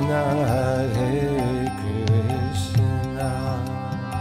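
Devotional chant music: a singing voice with a wavering, ornamented melody over a steady drone, with a few sharp percussive strikes.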